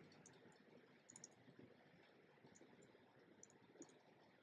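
Near silence with faint, scattered ticks of a stylus writing on a tablet screen.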